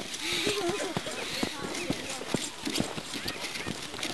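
People's voices talking outdoors, mostly in the first second, mixed with a scatter of short, sharp clicks that are irregularly spaced throughout.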